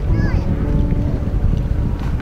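Wind buffeting the camera's microphone as a steady low rumble, with brief snatches of people's voices near the start and near the end.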